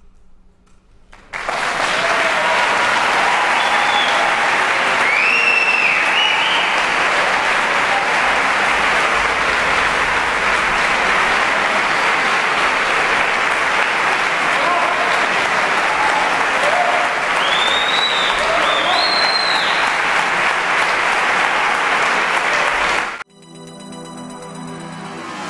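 Audience applause breaks out after a second of quiet and runs on loud and dense, with a few high cheering calls rising over it. It cuts off abruptly about a second before the end.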